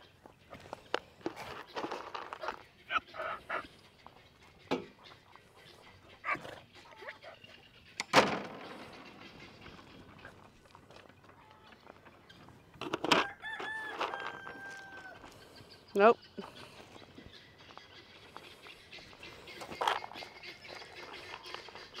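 A rooster crowing once, faint, about two-thirds of the way through, over scattered quiet knocks and rustles.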